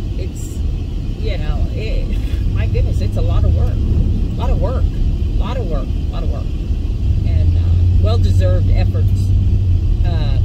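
A woman talking inside a pickup truck cab over the steady low rumble of the truck, which grows louder in the middle and again toward the end.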